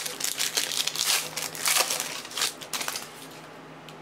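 Crinkling and tearing of a trading-card pack's foil wrapper being opened by hand: a quick, irregular run of crackles that dies away about three seconds in.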